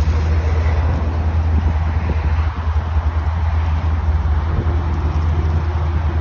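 The 2018 Chevy Tahoe LS's V8 engine idling, a steady low rumble heard from behind the vehicle.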